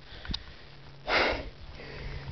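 A man's single short, sharp breath, sniffed through the nose, about a second in.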